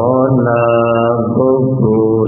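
A male voice chanting Buddhist paritta verses in Pali, drawing out one long sustained syllable that shifts pitch about two-thirds of the way through.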